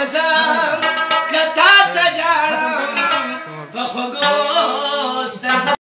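A man sings a devotional qawwali over a plucked rabab. The music cuts off suddenly near the end.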